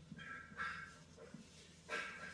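Marker pen writing on a whiteboard, a few faint squeaky strokes.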